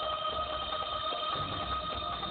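Background music from a film score: a few steady high notes held without a break over a low rumble.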